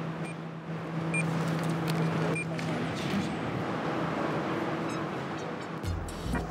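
Handheld barcode scanner giving three short, high beeps about a second apart, each beep confirming a good read of a product label, over a steady low hum.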